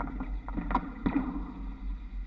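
Trolley poles of a Škoda 21Tr trolleybus passing under an overhead-wire crossing: the current-collector shoes click against the wire fittings, a few sharp clicks about three-quarters of a second and a second in, over a steady low rumble.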